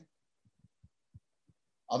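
A pause in a man's speech over a Zoom call: near-dead silence holding five or six faint, short low thumps, then his voice resumes near the end.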